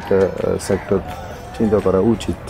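Speech only: a man talking, with a short pause about a second in.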